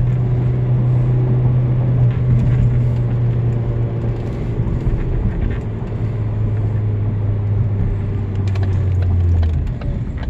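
Engine and road noise inside a moving car's cabin: a steady low hum whose pitch sinks gradually in the second half as the car slows down.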